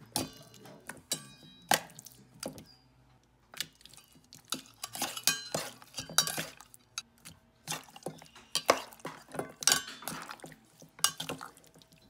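Metal utensils clinking and scraping against a stainless steel mixing bowl as pork slices are turned over in a wet marinade. The knocks come irregularly, some with a brief metallic ring, with a short lull about three seconds in.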